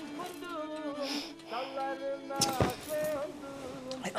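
Kemençe (Black Sea fiddle) playing a folk tune: a steady drone under a melody that bends up and down. A short noise comes just past halfway.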